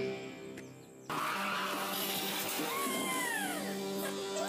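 Background music with sliding, swooping tones that rise and fall in pitch. It fades for about a second, then comes back in suddenly and carries on steadily.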